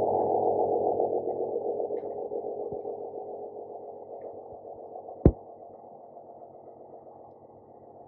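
Endoscope suction running, drawing through the scope's suction channel during cleaning straight after a procedure: a steady rushing hum, loud at first and fading over the seconds. A sharp click about five seconds in.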